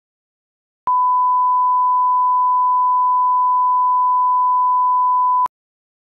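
A steady single-pitch line-up test tone, a sine-wave beep held for about four and a half seconds. It starts with a click about a second in and cuts off suddenly with a click shortly before the end.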